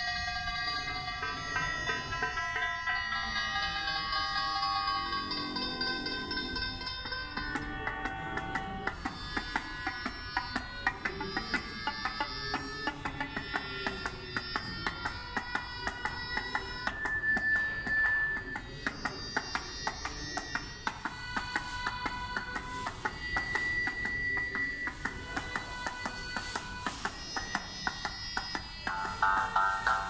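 Electronic music synthesised live in SuperCollider and driven by body-worn sensors: clusters of pitched notes that shift every second or two over many fast clicks.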